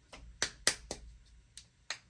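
A handful of sharp, irregular clicks and taps from a small plastic acrylic craft-paint bottle being handled in both hands.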